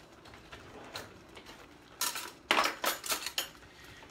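A spoon clinking and knocking against the stainless steel saucepan as tomato sauce is spooned over the fish. There are several quick clinks starting about halfway through.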